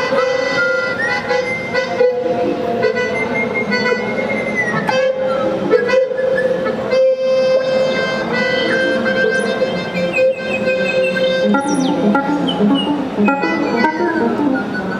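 Live electronic improvisation by a theremin, melodica, piano and Tenori-on trio: a steady held tone runs throughout while higher pitches glide and bend up and down in the way of a theremin. Quick short repeated notes come in near the end.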